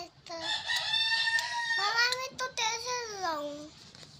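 A long high-pitched call: a short note, then a high note held for about a second and a half, then falling in pitch over the next two seconds.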